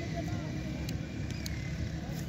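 Indistinct distant voices over a steady low rumble, with a few faint clicks.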